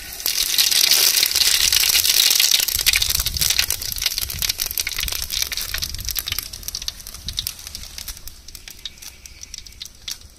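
Dried bay leaves dropped into hot oil in an aluminium pot, sizzling and crackling at once as they hit. The sizzle is loudest for the first few seconds, then slowly dies down.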